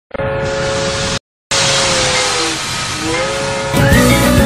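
Steam locomotive sounds: a steady hiss of steam under a held whistle tone, which cuts out briefly about a second in, then sags in pitch and climbs back. Music starts just before the end.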